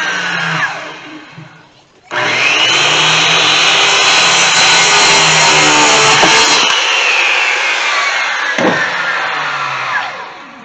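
Handheld electric circular saw cutting wood: it winds down with a falling whine in the first second or two. It starts again with a rising whine about two seconds in, runs loud through the cut, then winds down with a falling whine over the last few seconds.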